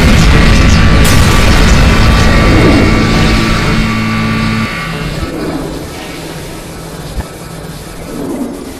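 Loud action-animation soundtrack of music and booming battle effects, with a low drone that cuts off suddenly a little past halfway, after which it grows quieter.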